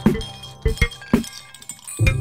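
Ice cubes clinking against a glass: about four sharp clinks, each ringing briefly, as part of a musical piece built from ice-in-glass recordings.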